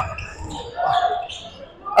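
Basketball game noise in a large gym: the ball bouncing on the hardwood court, with faint voices in the hall.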